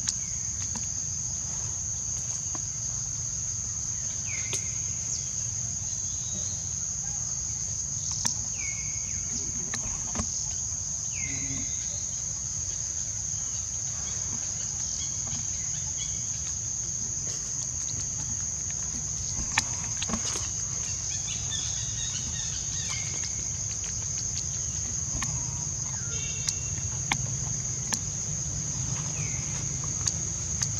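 A steady, high-pitched drone of insects, with a low hum underneath. A few short chirps that fall in pitch come every few seconds.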